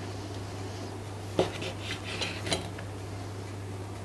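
Steel kitchen knife slicing dried chicken basturma on a wooden cutting board. A sharp knock of the blade on the board comes about a second and a half in, then a few softer scrapes and taps, and a second knock about a second later.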